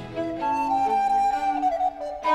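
Baroque recorder playing a solo passage in a concerto's fast movement: long held high notes over a sparse accompaniment with no bass, the line stepping down near the end.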